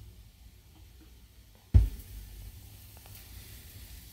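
A Denon DL-103R moving-coil cartridge's stylus coming down onto a spinning vinyl record: one sharp thump just under two seconds in, then faint surface hiss and light ticks from the lead-in groove. Before the drop there is a low hum.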